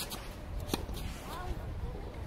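Sharp knocks of a tennis ball in play, the loudest about three-quarters of a second in, with scuffing footsteps of a player running on an artificial grass court over a low wind rumble.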